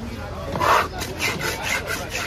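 A long fish-cutting knife scraped repeatedly across a wooden chopping block, clearing it: one loud stroke about half a second in, then quick short strokes, about five a second.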